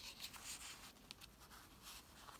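Faint rustling and sliding of paper and card as a tag is tucked into a paper pocket of a junk journal, with a small tick at the start.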